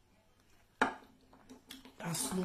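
Snow crab shell cracked by hand: one sharp crack a little under a second in, followed by a few fainter cracks and crackles as the shell is pulled apart.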